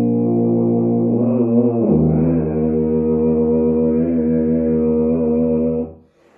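Solo tuba playing a held note, then a short run of moving notes about a second in, settling on a long, lower sustained note that stops just at the end.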